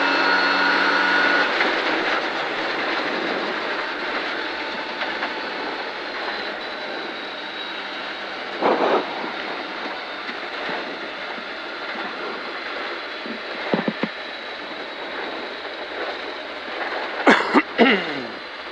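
Rally car heard from inside the cabin: the engine's high steady note in the first two seconds gives way to gravel tyre roar and wind noise, which slowly grow quieter as the car slows from flat out to under 100 km/h. A few brief louder knocks sound about halfway through and near the end.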